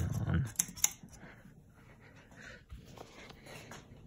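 Casablanca Delta ceiling fan running with four blades and a light kit, with a few sharp clicks just under a second in. It opens with a brief, loud, voice-like sound.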